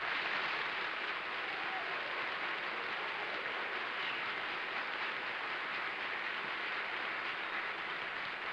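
Studio audience applauding steadily, a dense even clatter of many hands clapping.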